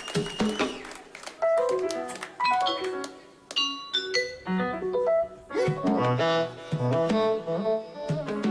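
Live band music: many short keyboard notes over sharp drum and percussion hits.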